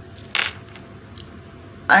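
A deck of tarot cards handled and shuffled, giving one short papery riffle about half a second in and a fainter flick about a second later. A woman's voice starts just before the end.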